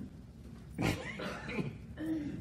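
A man's brief wordless vocal sound about a second in, its pitch falling, with no words in it.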